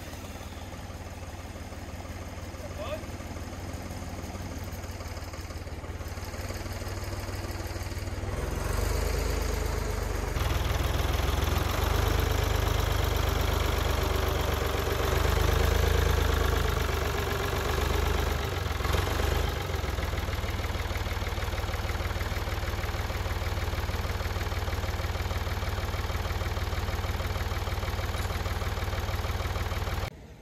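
Engine of a front loader running steadily while it lifts and lowers a heavy log on a chain. The low rumble grows louder about ten seconds in.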